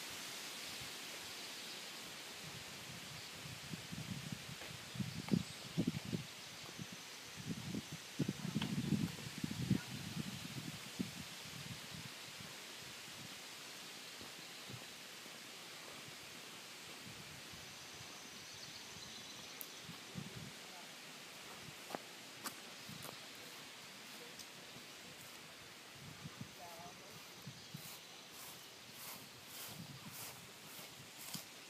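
Faint outdoor ambience: a steady hiss with low, muffled bumps and rustles in the first third, and a run of faint, quick high ticks near the end.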